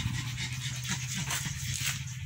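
A dog panting close by, over a steady low hum.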